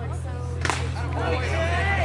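A pitched baseball popping into the catcher's mitt: one sharp crack about two-thirds of a second in, over spectators' chatter and a steady low hum.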